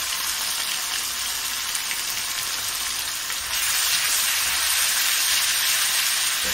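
Ginger-garlic paste sizzling in hot oil in a wok, a steady frying hiss that grows louder about three and a half seconds in.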